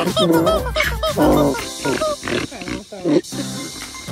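A music track with short repeated high notes plays, and a donkey close to the camera makes three loud vocal sounds over it.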